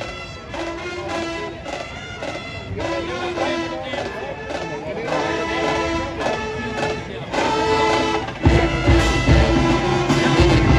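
A marching band playing music with held brass notes, louder with heavy drums coming in about eight and a half seconds in.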